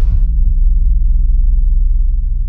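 Deep, steady low rumble of an intro sound-design drone, with the tail of a whoosh dying away just as it begins.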